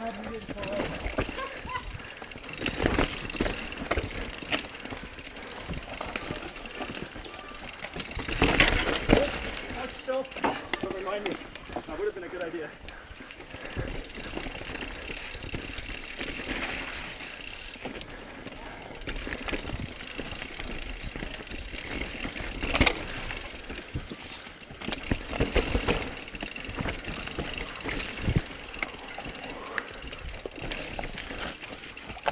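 Mountain bike riding down a rough dirt trail: tyres rolling over dirt and rock, with the bike rattling and knocking unevenly over bumps and a few louder hits.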